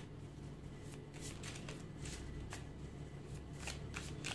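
Tarot deck shuffled by hand, the cards flicking and sliding against each other in quick, irregular soft clicks.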